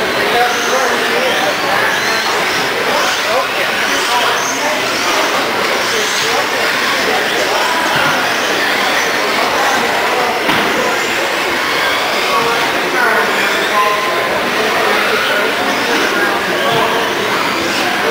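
Radio-controlled cars running on an indoor track, with many people talking in a large hall.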